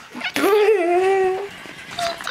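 Hatchimal electronic toy creature giving a sad, whimper-like call: one drawn-out note that rises, then holds level for about a second, which the owners take as the toy's heart being broken.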